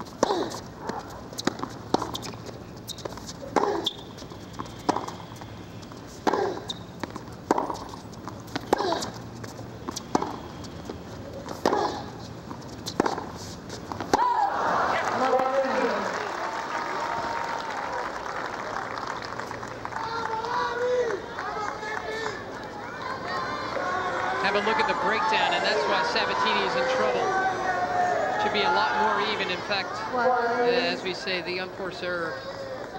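Tennis rally: sharp pops of racquet strings hitting the ball and the ball bouncing, roughly one a second, for about fourteen seconds. Then the crowd breaks into loud cheering and shouting that carries on and swells again near the end.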